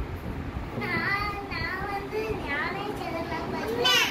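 A young girl's voice in several short, sing-song phrases, the last and loudest near the end.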